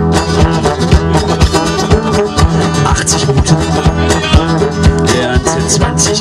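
Live instrumental blues: a guitar and a brass horn playing over a fast, even clicking rhythm.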